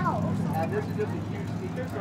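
People talking in the background over a steady low hum.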